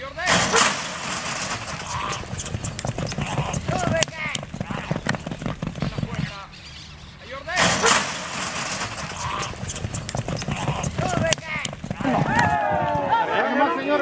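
Racehorses breaking from a metal starting gate with a sudden bang and galloping off on a dirt track, hooves drumming in a quick, dense beat. It happens twice, the second break about seven and a half seconds in, with people shouting near the end.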